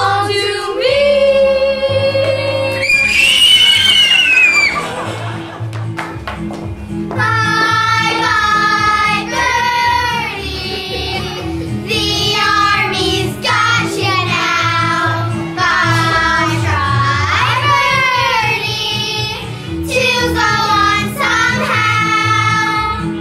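Children singing a show tune over recorded backing music, with long held notes. A high note is held about three to four seconds in, and after a brief lull the singing picks up again.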